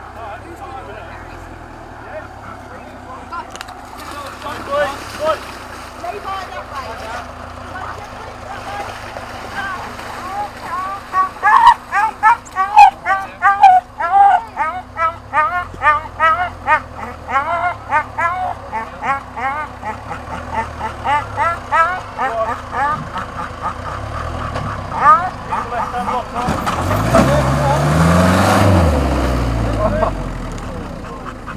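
A stuck Series Land Rover's engine running with a low rumble, then revved hard near the end, the pitch climbing and falling back as it tries to drive out of the mud. Through the middle, loud voices close by are louder than the engine.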